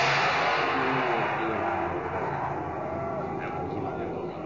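A large gong struck once as a radio-drama sound effect, its loud crash coming in suddenly and then slowly dying away.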